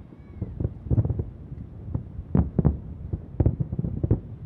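Distant aerial firework shells bursting: a rapid series of sharp bangs in clusters, with a low rumble between them.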